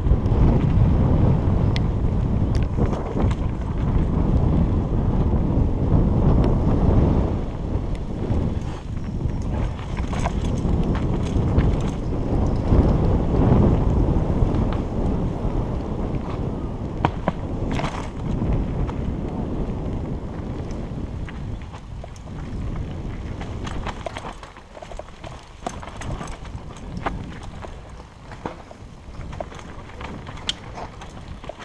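Wind buffeting a helmet-mounted camera's microphone over the rumble and rattle of a mountain bike descending a rough dirt trail, with scattered sharp clicks and knocks. The rumble is loudest in the first half and eases off after about twenty seconds.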